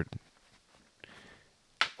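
A thrown golf disc striking a tree: one sharp crack near the end, after a faint rustle about a second in.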